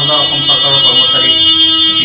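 A loud, steady, high-pitched electronic tone, like a buzzer or alarm, sounds over a man's speech.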